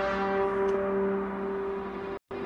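Dramatic background music: a few steady, bell-like notes held over a low drone.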